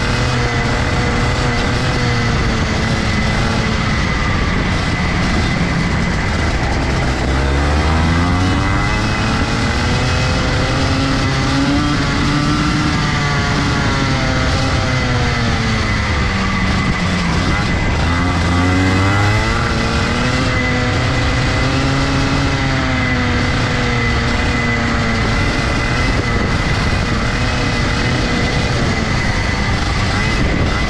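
Rotax Junior Max kart's 125cc two-stroke engine, heard onboard at racing speed. Its pitch climbs steeply as it revs out on the straights and falls away as the driver eases off into corners, several times over, with one sharp drop a little after the middle.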